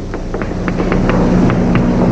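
Chalk tapping and scraping on a chalkboard as something is written: a quick, irregular run of small taps, several a second, over a steady low hum and hiss.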